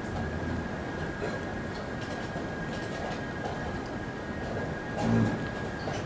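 Playing-hall ambience: a steady rumbling hum with a constant high thin whine, and faint clicks of chess pieces and clock presses during a blitz game. About five seconds in there is one short, louder low sound.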